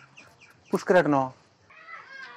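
A single drawn-out vocal call about a second in, lasting about half a second, its pitch falling.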